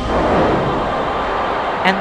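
Atlas V rocket's engines igniting for liftoff: a loud, steady rush of noise. A man's voice comes in near the end.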